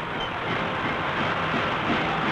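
Steady rumble of a column of military jeeps driving past in a parade, on a muffled old film soundtrack.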